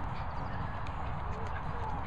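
Two small dogs, a cockapoo and a bichon, playing and tussling over a toy on grass, with faint scuffles, under a steady rumble of wind on the microphone.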